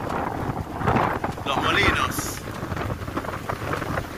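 Strong, gusty sea wind blowing across the microphone: a loud, dense rush of noise that rises and falls with the gusts.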